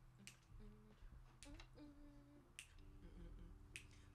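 Very faint finger snaps keeping a slow beat, four of them about a second apart, over quiet held low notes.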